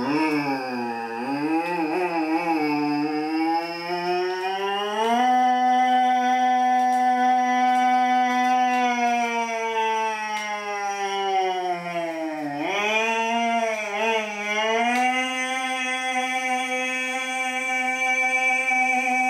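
A man imitating a motorbike engine with his voice in one long, unbroken breath. The pitch climbs and holds about five seconds in, drops sharply near the middle as if changing gear, then climbs again and holds to the end.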